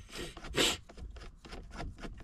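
Screwdriver working the small Phillips screw that holds the automatic shifter box, with light clicks, rubbing and scraping of metal and plastic. There is a brief louder rustle about half a second in.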